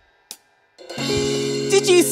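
A band's music stopped dead for a musical pause: almost a second of silence broken by one short click, then sustained held chords come back in about a second in, with a voice starting near the end.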